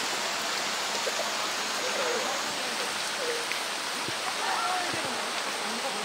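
Heavy rain falling on the water of a pool, a steady even hiss, with faint voices murmuring underneath.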